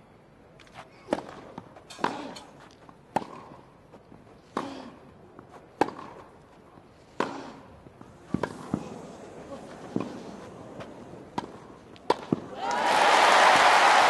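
Tennis rally: a serve and then about a dozen sharp racket-on-ball hits, roughly a second apart. Near the end the crowd breaks into loud applause as the point is won.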